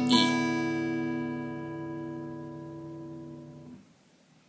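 Acoustic guitar in standard tuning: the high E string is plucked, and all six open strings ring together and slowly fade. The ringing stops abruptly shortly before the end.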